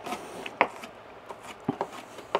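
Chef's knife chopping green onion on a plastic cutting board: several light, uneven taps of the blade on the board.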